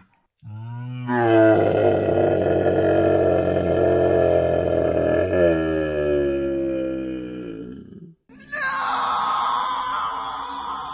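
A long, deep, roar-like vocal cry held for about seven seconds, its pitch falling toward the end. After a brief break near the end, a higher, wavering cry takes over.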